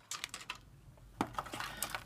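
Light, sharp clicks and taps of plastic model-kit parts trees (sprues) being handled and knocking against each other and the box, scattered irregularly, with a small cluster at the start and several more in the second half.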